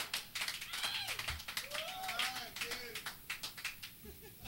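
Scattered clapping and voices from a small house-party audience after a live band's song, with no music playing.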